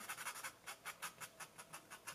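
Faint, quick scratching strokes, about five a second, of a small plastic sculpting tool rubbing back and forth over damp, marker-dyed cotton fabric to spread the fabric marker.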